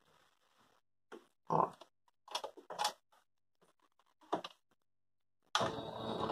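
A few short murmured vocal sounds over near silence, then a domestic electric sewing machine starts stitching about five and a half seconds in and runs steadily.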